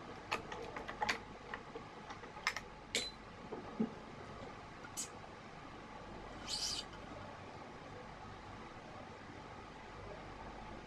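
BG66 badminton string being woven by hand across the main strings of a racket. A run of small ticks comes as it passes over and under the mains, then two short zipping hisses as the string is pulled through, one about five seconds in and one about a second and a half later.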